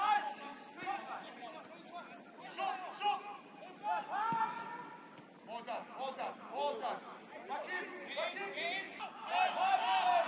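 Footballers shouting and calling to one another during play: several voices at a distance, in short calls, with louder shouts near the end.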